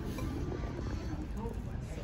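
Restaurant room noise: a steady low hum with faint, indistinct voices in the background.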